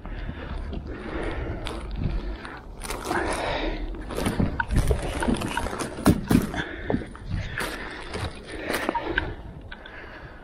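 Loaded grocery wagon rattling and clattering as it is hauled over steps and along concrete, with frequent irregular knocks and bumps over a low rumble.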